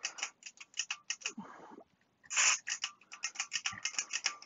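Aerosol can of WD-40 Specialist contact cleaner spraying: a faint hiss a little over a second in, then a short, louder hiss about two and a half seconds in. Rapid, irregular ticking runs underneath.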